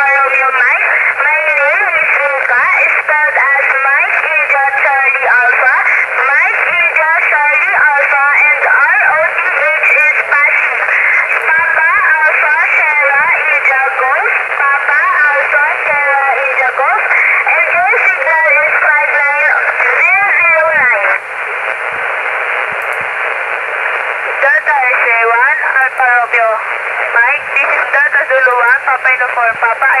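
Single-sideband voice transmissions received on an HF amateur transceiver tuned to 7.085 MHz lower sideband in the 40-metre band. The speech is narrowed to a thin radio band and rides over a steady hiss of static. About 21 seconds in the voices drop back and the hiss takes over for a few seconds, then speech returns.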